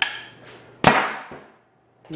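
A homemade low-pressure-air Nerf Rival launcher firing: a smaller click at the start, then about a second in a loud, sharp pop as its quick exhaust valve dumps the air chamber to fire a foam round, followed by a faint tick.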